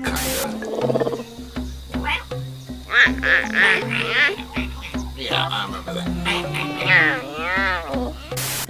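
Clouded leopard vocalizations over background music: a run of short high-pitched cries, then a pitched call that rises and falls near the end.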